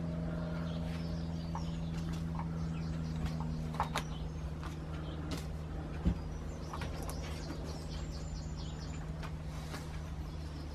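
Birds chirping in the background over a steady low hum, with faint clicks and rustles of hands pushing broad bean seeds into compost-filled plastic cells. A single dull thump about six seconds in.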